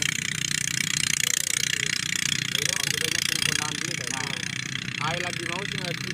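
A small engine running steadily as a continuous drone, with indistinct voices of people talking over it in the second half.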